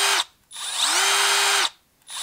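Milwaukee M12 Fuel brushless quarter-inch hex impact driver running free with no load. One run cuts off just after the start; about half a second in the trigger is pulled again, and the motor whine rises to a steady pitch, holds, then stops shortly before the end.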